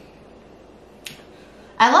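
Quiet room background with a single short, sharp click about a second in, then a voice begins speaking near the end.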